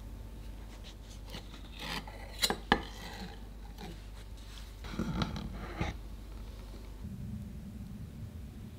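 Metal offset spatulas scraping and rubbing against the board and parchment, with two sharp clicks of metal about two and a half seconds in and a second stretch of scraping about five seconds in.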